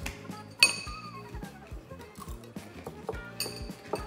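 Metal spoons clinking against clear glass cereal bowls: two sharp ringing clinks, one a little after half a second in and another near the end, with smaller scrapes between, over background music with a steady beat.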